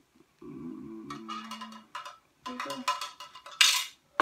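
Clear hard-plastic organizer pieces clicking and clattering as they are handled and set on a table, with one loud clatter near the end. A faint pitched, hum-like sound runs through the first half.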